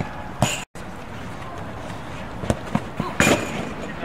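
A few sharp knocks from a football being kicked on an artificial-turf pitch, the loudest near the end, over steady outdoor background noise. The sound drops out completely for a moment near the start.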